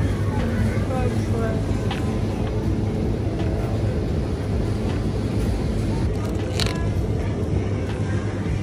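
Supermarket ambience at the refrigerated deli shelves: a steady low hum and hiss, with faint voices and a few light clicks in the background.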